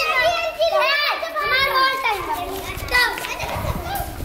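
Several children's high-pitched voices shouting and calling out, often over one another.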